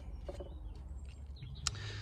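Background ambience in a pause between words: a steady low rumble, with one sharp click near the end.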